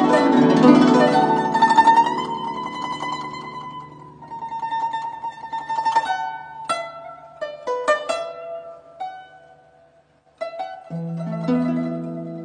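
Guzheng (Chinese zither) played solo. It opens loudly with a held tremolo (yaozhi) note over many ringing strings, then moves to separately plucked notes that ring and fade. Playing drops out briefly just after ten seconds, then resumes.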